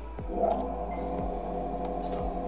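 An electric water pump switches on about half a second in and runs with a steady, noisy hum. It is drawing water, which the cook guesses is a neighbour washing dishes.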